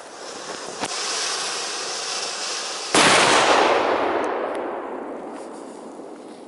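Ground-flower firework burning with a hissing rush that builds over the first few seconds, with one sharp crack about a second in. Just before three seconds in it erupts into a much louder burst that fades away over the next couple of seconds as the effect burns out.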